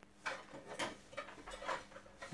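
Handling noise from a plastic dome security camera and its metal mounting bracket being picked up and moved about on a wooden bench: a string of irregular light knocks, clicks and scrapes.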